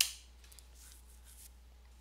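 A single sharp computer-keyboard click at the very start, fading within a fraction of a second, followed by faint room tone with a few soft ticks.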